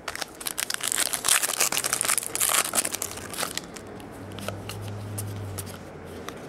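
A trading-card pack wrapper being torn open and crinkled by hand, a dense crackly rustle for about three and a half seconds that then dies down.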